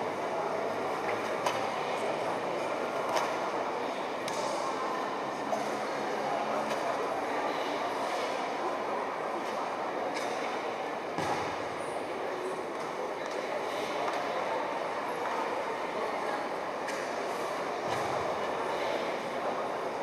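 Steady ambience of a large indoor sports hall: a continuous wash of distant crowd chatter and room noise, with a few short sharp clicks in the first six seconds.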